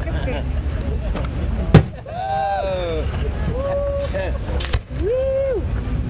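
A firework going off with a single sharp bang about two seconds in.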